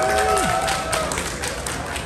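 Scattered applause: a small group of people clapping irregularly, with a short voice sound in the first second that drops in pitch.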